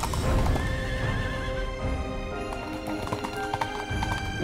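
Galloping horse hoofbeats and a horse whinny over background music.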